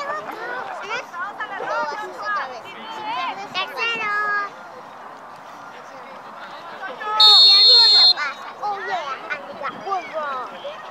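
Referee's whistle blown once, a single steady high blast about a second long, a little over seven seconds in, signalling the penalty kick to be taken. Spectators' voices call out before and after it.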